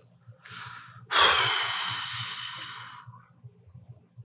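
A person's long sigh close to a microphone: a faint short breath in, then, about a second in, a loud exhale that fades away over about two seconds.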